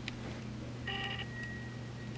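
A short electronic phone tone: a brief chord of steady beeps about a second in, leaving a single thin high tone that lingers and fades near the end. A faint click at the start, over a steady low hum.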